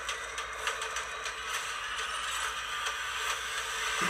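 Action-film trailer soundtrack playing from a TV speaker: a steady rushing hiss with faint ticks scattered through it.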